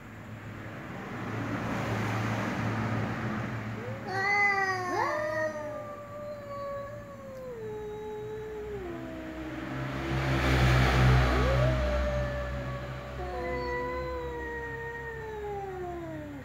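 Cat yowling in three long, drawn-out calls, each sliding slowly down in pitch, the low caterwaul of two cats facing off.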